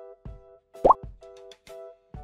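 Soft background music of held notes, broken by a short, loud rising 'bloop' cartoon sound effect about a second in.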